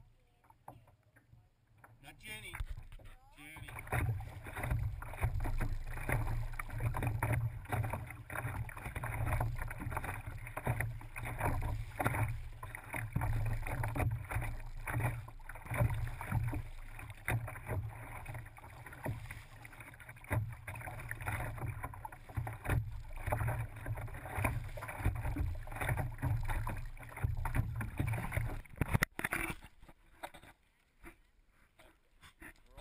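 Water slapping and splashing against a plastic kayak's hull as it is paddled through choppy water, starting about three seconds in. It is heard muffled and boomy through a GoPro's waterproof housing on the bow.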